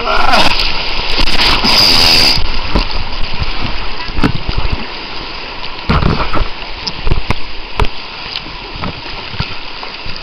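River rapids rushing and splashing over a camera riding at the water's surface, with the loudest wash in the first two seconds. Sharp slaps of water hit the microphone about four, six, seven and eight seconds in.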